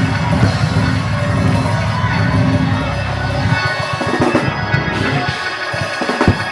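Church organ and drums playing praise music, with the congregation shouting and cheering over it.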